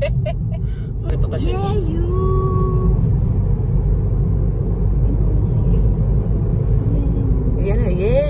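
Steady low rumble of road and engine noise inside a moving car's cabin. A short voice sounds about two seconds in.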